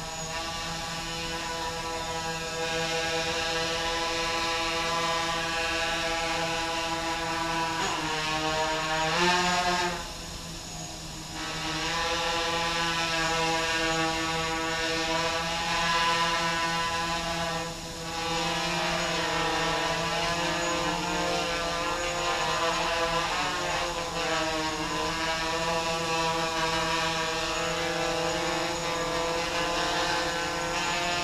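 Quadcopter with four Tiger MS2208 brushless motors spinning 8-inch props, hovering: a steady, many-toned motor and prop buzz. Its pitch swings up and down a few times as the throttle is corrected, with a brief drop about ten seconds in.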